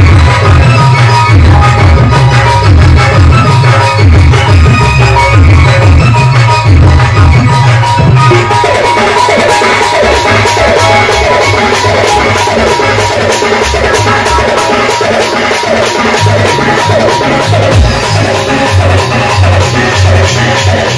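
Live folk band music with heavy drums and a keyboard playing a dance rhythm. About eight seconds in the beat changes: the deep drum strokes thin out and a denser, quicker pattern takes over.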